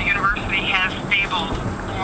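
Speech heard over a telephone line, mid-conversation, with a steady low hum under it.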